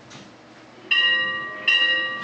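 Church bell rung by a rope pulled on its clapper: two strikes, about a second in and again most of a second later, each ringing on with a steady, clear tone.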